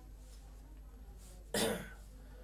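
A man's single short cough about one and a half seconds in, after a quiet pause.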